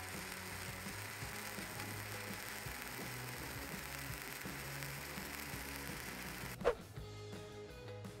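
Stick-welding arc on a steel pipe crackling and hissing steadily during the cap pass, under quiet background music. Nearly seven seconds in, the arc sound stops with a short whoosh and only music carries on.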